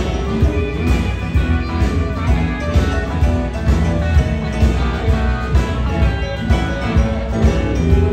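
Live blues band playing, with harmonica over drums, bass and electric guitar in a steady beat.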